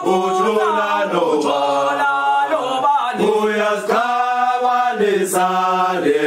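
Background music: a choir singing a chant, with voices holding long notes that slide up and down in pitch.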